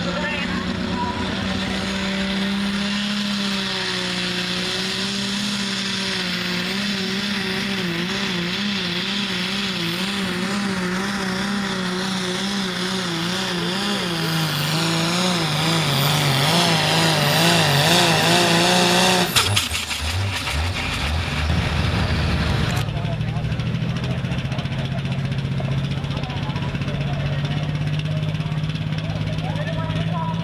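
Turbocharged pulling-tractor engine of a red International Harvester at full throttle hauling a pulling sled. Its note wavers up and down as the tractor hops, and a whine climbs in pitch. About 19 seconds in, the throttle is chopped and the engine drops off, a hiss cuts out a few seconds later, and a steadier, lower engine note carries on.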